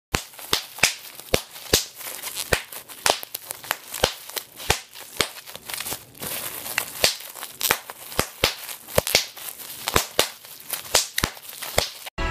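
Bubble wrap being squeezed and popped by hand: a string of sharp pops at irregular intervals, about two or three a second, with the plastic crinkling in between.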